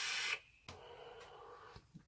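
A long, steady drag of air hissing through a sub-ohm vape atomizer, cutting off about a third of a second in. After it comes a faint, soft exhale of vapour.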